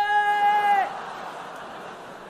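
A man's voice holding one long, high, steady note as a vocal sound effect, which cuts off with a slight drop in pitch just under a second in. A softer, steady rushing noise follows.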